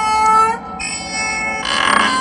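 Eerie horror-film soundtrack: three ringing, metallic tones in quick succession, each rising slightly in pitch.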